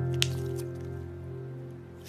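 Background music with long held notes fading out, and a single short wet squelch of slime squeezed by hand about a quarter second in.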